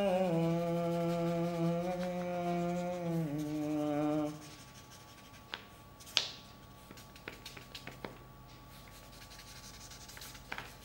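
A low hummed tune of a few long held notes, stepping down in pitch, stops about four seconds in. Then a pen scratches and taps on notebook paper while writing, with one sharper tap about six seconds in.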